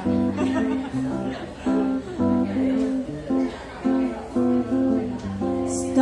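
Acoustic guitar strumming chords in a steady rhythm, a vamp played ahead of the song.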